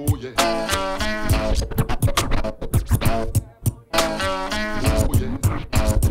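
Hip hop music played on turntables: a drum beat under a looped melodic phrase that repeats about every three and a half seconds, with record scratching.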